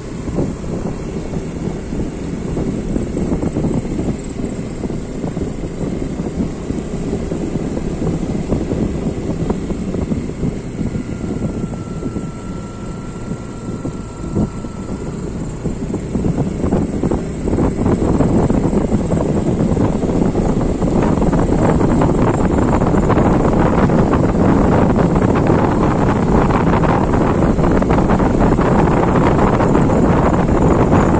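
A vehicle driving along a wet road: steady engine and tyre noise with wind rushing over the microphone, growing louder about eighteen seconds in.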